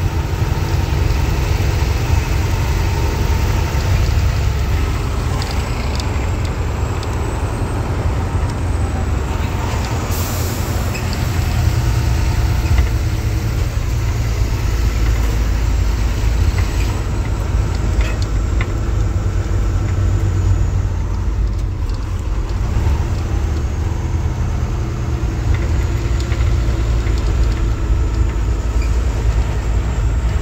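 Truck engine and road noise heard from inside the cab: a steady low rumble while the truck drives, with a brief hiss about ten seconds in.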